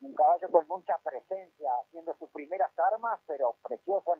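Speech: a person talking continuously, the voice thin and narrow as over a telephone line.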